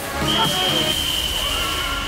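An umpire's whistle blown in one long, steady blast, starting about a quarter of a second in.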